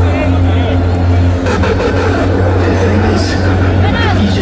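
Hardcore electronic music from a festival main-stage sound system, picked up on a phone in the crowd: a loud, held deep bass note with sustained tones above it and voices over the top, with no steady kick drum in this stretch.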